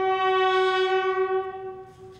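A lone bugle holding one long, steady note of a military funeral call, fading out near the end.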